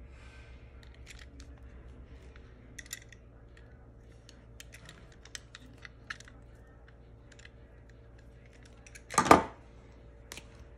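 Utility knife cutting the rubber jacket of a power cable: faint, scattered scrapes and small clicks of the blade on the cord. A single loud knock comes near the end.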